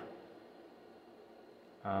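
Faint room tone with no distinct event, then a man saying a drawn-out 'um' near the end.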